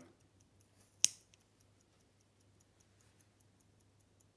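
Omega 38.5L T1 mechanical pocket watch movement ticking faintly and evenly at about five ticks a second. One sharp click about a second in comes from handling the watch.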